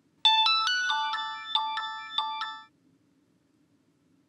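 Mobile phone ringtone: a quick melody of about a dozen bright, chime-like notes that starts about a quarter second in and cuts off suddenly a little past halfway, as the incoming call is answered.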